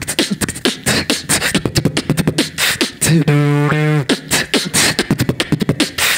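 Solo beatboxing amplified through a handheld microphone: rapid kick, snare and hi-hat sounds made with the mouth, broken about three seconds in by a held low note of nearly a second before the beat resumes.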